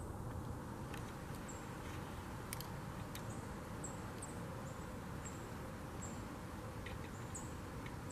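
Outdoor ambience: a steady low hiss with short, high chirps repeating every second or so, and a few sharp clicks.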